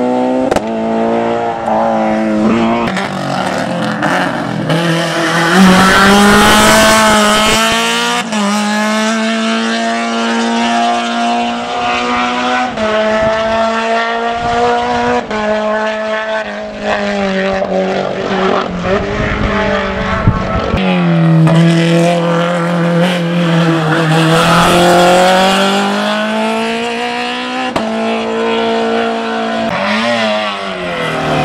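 Hillclimb race car engines running at high revs, the pitch climbing under acceleration and dropping sharply at each gear change or lift off the throttle.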